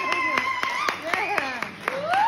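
A small audience clapping, with scattered separate claps rather than a dense roar. A voice holds a long high whoop through the first second, and there are a few moments of talking after it.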